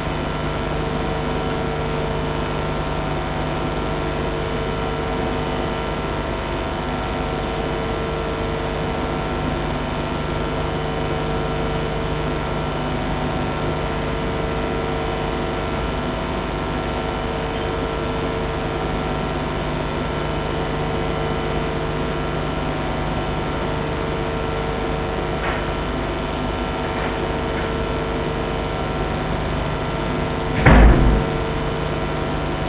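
Steady mechanical room hum with an even hiss and several constant tones; nothing else stands out.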